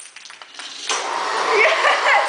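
Electric blender motor switching on about a second in and running steadily, with an excited voice over it near the end.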